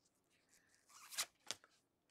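Faint handling of trading cards: a card slid off a hard plastic card holder in gloved hands, with a short scrape about a second in and a light click just after.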